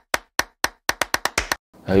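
Edited percussion sound effect accompanying a title card: about ten short, sharp clicks that come faster and faster, then stop about one and a half seconds in.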